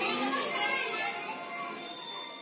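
Children's voices and chatter over background music, fading out steadily.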